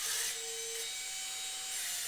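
Wall-climbing remote-control toy car's suction fan running with a steady whir, a faint hum under it.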